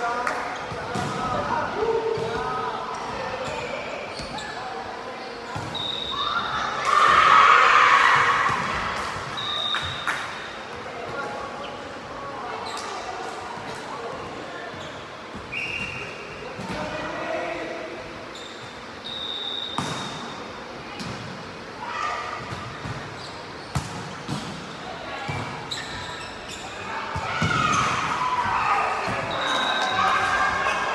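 Indoor volleyball play: players' shouts and calls, with the ball being hit and bouncing on the hard court, echoing in a large sports hall. The loudest moment is a burst of voices about seven seconds in.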